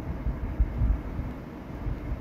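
Low, uneven rumbling background noise that swells and fades irregularly, with no clear tone or rhythm.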